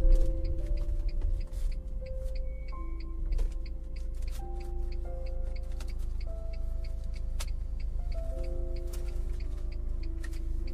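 Slow ambient music of soft held notes that change every second or two, over a steady low rumble with scattered faint clicks.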